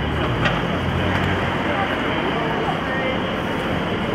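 Street ambience of indistinct voices talking over a low vehicle engine hum that fades about a second and a half in.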